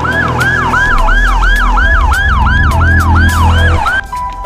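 Ambulance siren on a fast yelp: a rising wail that drops back and repeats about three times a second. It cuts off suddenly at the end.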